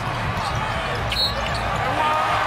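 Steady arena crowd noise with a basketball bouncing on the hardwood court during live play, and a short high squeak about a second in.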